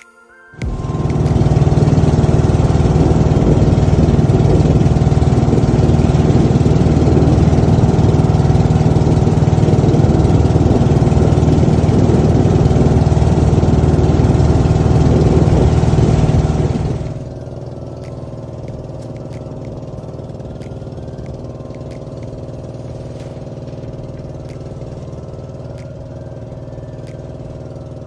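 Boat engine running loud and steady, then dropping abruptly to a lower steady level about two-thirds of the way through.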